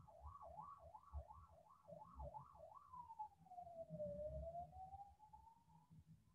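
Faint siren: a fast warble, about two or three rises and falls a second, then one slow wail that falls and climbs again.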